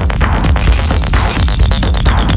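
Industrial techno from a DJ mix: a heavy, throbbing bass line under dense, fast, evenly repeating percussion, with a high repeating synth note coming in near the end.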